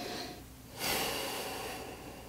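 A man sniffing whiskey in a tasting glass: a breath in through the nose trailing off just after the start, then a longer, louder sniff of about a second.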